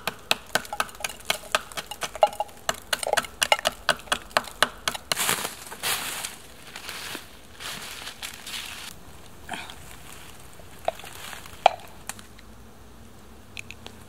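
A knife scraping hardened spruce resin off bark in quick sharp strokes, about four a second, then rustling and crunching of dry leaf litter underfoot, with a few scattered clicks near the end.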